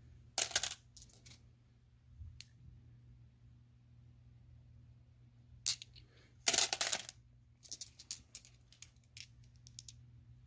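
Polished tumbled stones clicking and clattering against one another as they are handled and picked out of a plastic bowl. The sound comes in short clusters, with the loudest one about two-thirds of the way through and a run of quick small clicks near the end. A faint low steady hum sits underneath.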